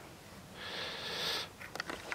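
A person's soft breath drawn in between spoken phrases, a hiss lasting about a second, followed by a few faint clicks near the end.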